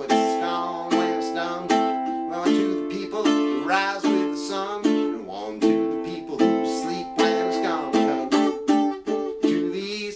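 Ukulele strummed in a steady reggae rhythm, with strong chord strums a little more than once a second and lighter strokes between them.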